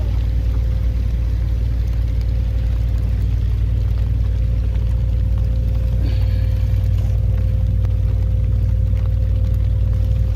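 An engine running steadily: a loud, even low drone with a constant hum above it and no change in speed.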